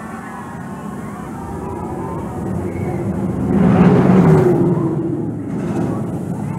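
A roller coaster train rushing past: the noise builds steadily, peaks about four seconds in, then fades.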